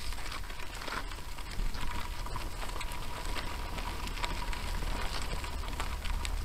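Gravel crunching under tyres and shoes, with scattered rattling clicks and a low wind rumble on a bike-mounted action camera's microphone. A faint steady high whine runs underneath.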